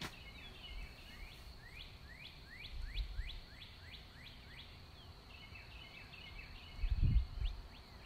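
A songbird singing in the background: twittering notes, then a quick series of downward-sliding whistles at about three a second, then more twittering. Low rumbling bumps on the microphone come about three seconds in and again near the end.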